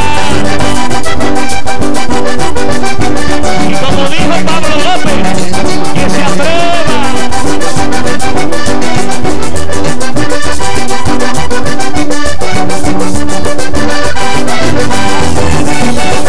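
Live vallenato band playing an instrumental passage, the button accordion carrying the melody over bass and percussion, loud and steady.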